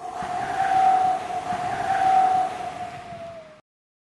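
Logo sting sound effect: a rushing whoosh with a steady held tone that grows louder, then dips slightly in pitch and fades out after about three and a half seconds.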